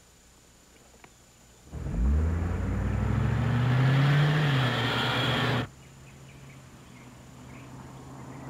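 Cadillac convertible's V8 engine accelerating as the car drives off past, loud, its pitch rising and then falling. The sound starts about two seconds in and cuts off suddenly near six seconds, leaving a fainter steady engine hum.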